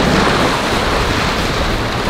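Wind buffeting the microphone over the rushing wash of choppy inlet water and a passing boat's wake.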